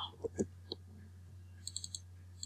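Computer keyboard keystrokes: a few separate clicks in the first second, then a quick run of light taps near the end, over a steady low electrical hum.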